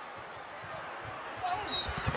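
A basketball being dribbled hard on a hardwood court during a fast break, with a quick run of bounces in the second half over steady crowd noise in the arena.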